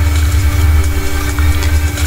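Steady low electrical-sounding hum with a faint held tone above it and a light hiss, the background noise of the recording, with no speech.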